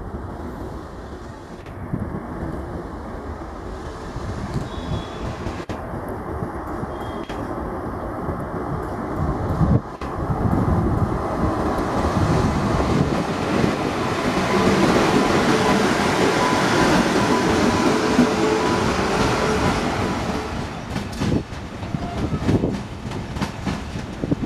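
Indian Railways express train with an electric locomotive passing close by: steady rumble and clatter of wheels on the rails. It grows louder about ten seconds in and stays loudest through the middle, with a faint steady squeal tone. Near the end come many short clacks of wheels over rail joints and points.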